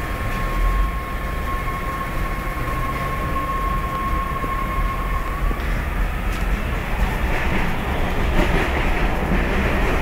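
Running noise of a train heard from inside a passenger coach: a steady rumble, with a thin steady whine for the first five seconds or so, and rougher, louder rattling toward the end.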